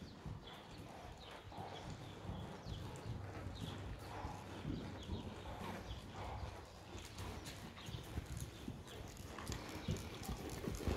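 Hoofbeats of a ridden horse moving on a soft indoor arena surface.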